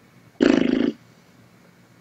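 A single short vocal sound, about half a second long, comes a little under half a second in.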